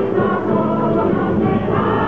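A Canarian rondalla playing: a mixed choir singing over strummed and plucked guitars and lutes, with flutes, in one continuous passage.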